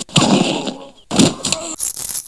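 Fight sound effects: three quick bursts of noisy hits and crashes, about half a second apart.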